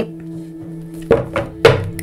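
Two dull thunks about half a second apart, a deck of tarot cards knocked against the tabletop, over a steady ambient music drone.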